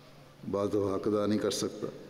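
A man speaking: after a short pause, one phrase of about a second and a half.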